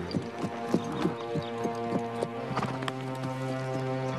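A ridden horse's hoofbeats clip-clopping at a steady rhythm of about four or five strikes a second, thinning out after about two and a half seconds, over soft background music with held chords.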